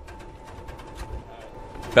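Golf cart running, a thin steady whine with light rattling clicks and a low rumble, slowly growing louder.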